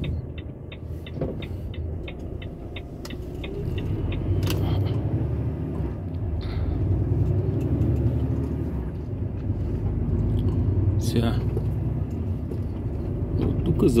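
A truck's turn signal ticking steadily, about three ticks a second, over the low rumble of its diesel engine heard inside the cab. The ticking stops about three seconds in, and the engine grows louder as the truck pulls away.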